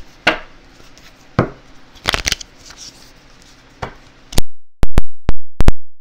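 Tarot cards being handled on a table: a few sharp taps and slaps of cards, then a quick run of five very loud, sharp clicks near the end.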